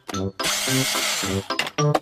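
Cartoon workshop sound effect: a rough whirring tool noise lasting about a second, over light, bouncy staccato music, as the racing car is put together.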